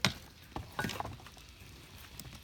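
A sharp knock, followed by a few softer clicks and taps: handling noise from the cooking gear.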